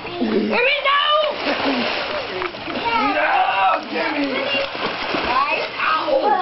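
Pool water splashing and sloshing as people move and play in it, with excited voices shouting over the splashing.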